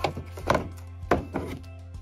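Wood-framed photographs knocking against a table as they are handled, four short knocks over steady background music.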